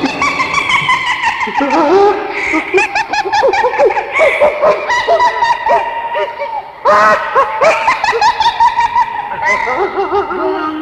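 A high-pitched voice laughing in long, rapid, repeated peals, breaking off briefly about seven seconds in and then going on.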